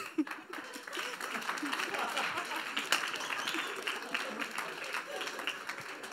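Audience applauding: a dense patter of clapping that builds about a second in and tapers off toward the end, with a few voices murmuring underneath.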